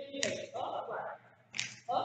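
A voice speaking in short phrases, the words not made out.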